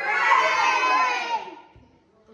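A group of children shouting together, many voices at once, loud for about a second and a half, then dying away.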